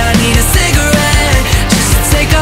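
A loud, rock-tinged song with a steady drum beat and heavy bass.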